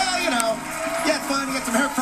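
Men's voices talking, with a steady studio-audience hubbub behind them.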